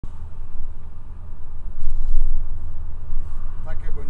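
A low, steady rumble like a running vehicle, with a brief voice-like sound near the end.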